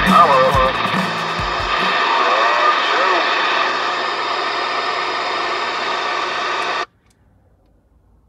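Cobra 29 NW LTD Classic CB radio tuned to channel 19, its speaker putting out a garbled voice transmission buried in heavy static, which cuts off suddenly about seven seconds in. The tail of a music track with a beat fades out under it in the first two seconds.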